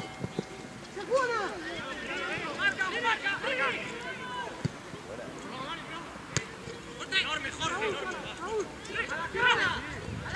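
Shouting voices of players and spectators on a football pitch during a match, with a few sharp knocks between the calls.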